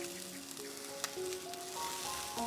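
Background music of slow, held melody notes over the faint sizzle of chicken wings cooking on a charcoal grill, with a single light click, likely the tongs, about a second in.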